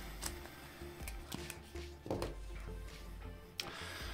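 Soft background music with held notes. A few faint clicks and rustles of cardboard packaging as a vape tank is pulled from its box insert.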